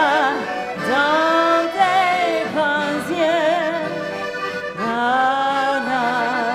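Live cabaret song played on violin and acoustic guitar with a woman's wordless "la, la" singing; the melody is held in long notes with strong vibrato, with notes scooping upward about a second in and again near the end.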